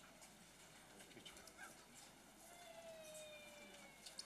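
Near silence: faint open-air crowd ambience with a few light clicks, and a faint steady tone that slides slowly down in pitch for about the last second and a half.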